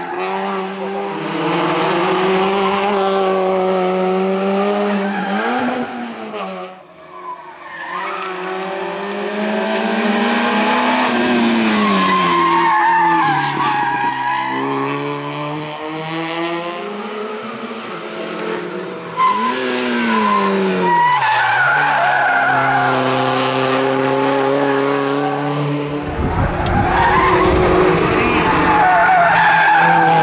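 Hill-climb race cars' engines revving hard up the mountain road, pitch climbing through each gear and falling at each shift and lift for the corners. Tyres squeal through the bends, and near the end a car passes close with a low rumble.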